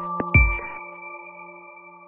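Electronic logo jingle ending: two short hits about a third of a second in, then several held synth tones that ring on and slowly fade out.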